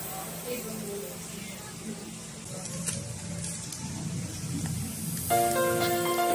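Water boiling in a stainless steel pot, a low, steady bubbling with small crackles. Background music comes back in about five seconds in.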